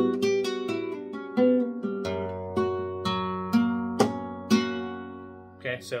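Manuel Rodriguez Model FF flamenco guitar, capoed with nylon strings, playing a slow arpeggio: single notes plucked one after another, about two a second, each left ringing over the next. This is the beginner solea falseta arpeggio that follows the count of six.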